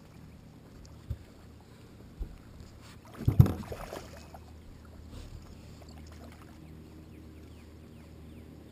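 Dull knocks and bumps on a fishing boat over a low steady hum, with a small knock about a second in, another about two seconds in, and the loudest thump about three and a half seconds in.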